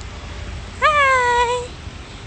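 A toddler's single drawn-out whiny vocal sound, about a second long, jumping up in pitch and then sliding slowly down. A steady low rumble runs underneath.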